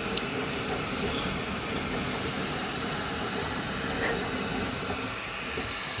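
A Flashforge 3D printer running mid-print: a steady whir of its fans and motors, with faint steady tones.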